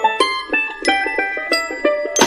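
Background music: a bright melody of plucked notes, several a second, with no bass underneath.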